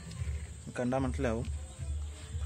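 A voice speaking briefly about a second in, over a steady low hum.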